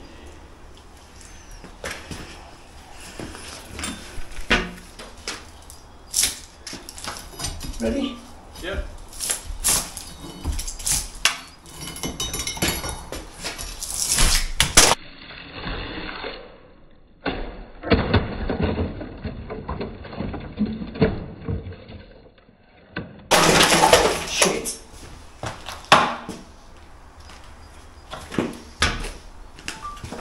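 A steel bar knocking and prising at a course of brick-on-edge over a door opening: a run of sharp metal-on-brick knocks and scrapes. A little over two-thirds in, the loosened brickwork breaks away and falls in a loud crash.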